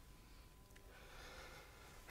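Near silence: the faint steady hiss of an old recording, with a thin steady tone under it.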